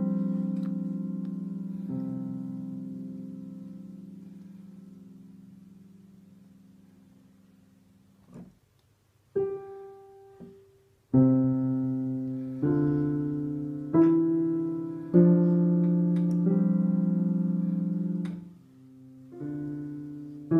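Digital piano played slowly with both hands. A held chord dies away over the first eight seconds or so. After a short lull and a single note, a slow run of notes begins about eleven seconds in, with low and high notes struck together roughly every second and a half, each left to ring and fade.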